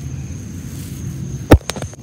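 Steady low rumble with a faint, thin high tone. About one and a half seconds in comes a single sharp, loud knock, then two or three lighter clicks.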